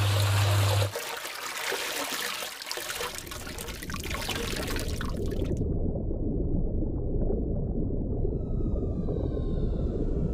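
A small garden waterfall splashing into a koi pond, with a steady low hum that cuts off about a second in. The splashing stops abruptly about halfway through, leaving a low underwater rumble, and whale calls gliding slightly downward come in near the end.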